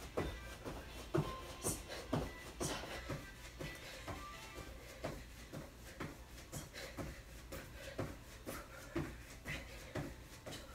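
Sneakers landing on an exercise mat over carpet during jumping jacks, a steady run of soft thumps about two a second, with music playing faintly behind.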